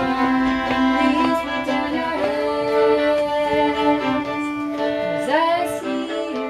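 Several fiddles bowed together in a rehearsal, playing long held notes against one another, with a slide up in pitch about five seconds in.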